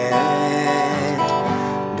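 Acoustic guitar strummed, the chord ringing in the gap between sung lines of a song.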